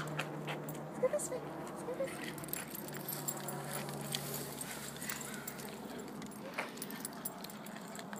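A puppy's collar tags jingling with scattered light clicks and rustles as she moves about.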